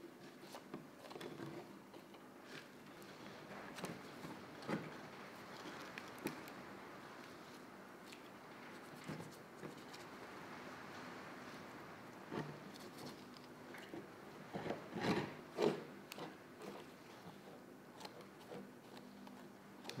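Faint sounds of a knife cutting and deer hide being pulled off a whitetail skull, with scattered light knocks and handling noises, a quick cluster of them about fifteen seconds in.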